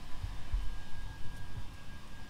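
Low, uneven rumble with a faint steady high whine underneath; no speech.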